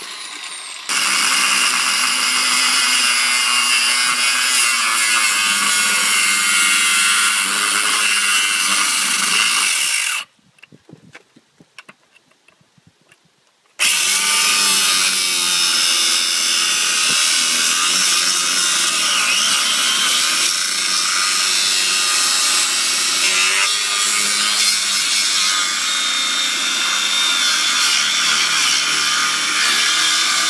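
Angle grinder with a cutting disc cutting into the steel centre of a riding-mower wheel around the hub: a loud, steady grinding screech. It starts about a second in, stops for about three and a half seconds near the ten-second mark, then starts again and runs on.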